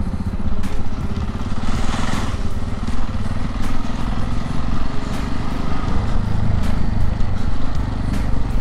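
Motorcycle engine running steadily under way, a low pulsing drone with an even hiss of wind and road noise over it.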